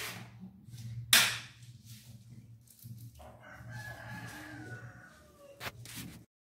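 A rooster crowing, one drawn-out call of about two seconds starting around three seconds in, over a low steady hum. A single sharp knock about a second in is the loudest sound.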